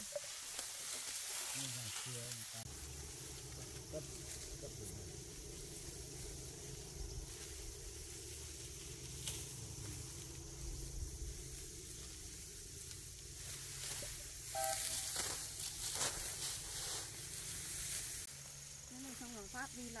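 Dry upland rice stalks and panicles rustling as they are gathered and plucked by hand, with a few sharp clicks and a steady low hum underneath.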